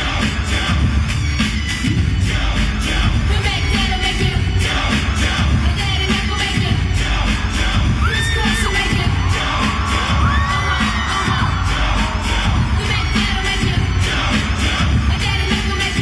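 Live pop dance music with a steady, bass-heavy beat over an arena sound system, heard from among the audience, with a crowd of fans screaming and cheering through it; a few high, gliding shrieks stand out about eight to eleven seconds in.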